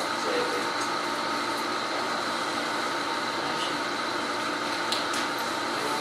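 Steady room noise: an even hiss with a faint low hum and a thin high tone throughout, and no clear voice.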